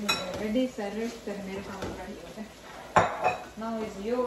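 A plastic spatula stirring chicken curry in a large nonstick sauté pan, knocking and scraping against the pan, with a sharp knock at the start and a louder one about three seconds in.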